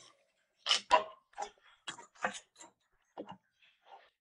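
A string of light clicks and knocks as a jigger of coconut rum is poured over ice in a glass tumbler and the jigger and a drink can are handled on a wooden tabletop. The two loudest knocks come about a second in, with fainter ones after.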